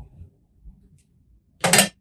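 A short metallic clink and clatter near the end, as a small metal clamp is set down on the bench among loose nuts and washers, after some faint handling noise.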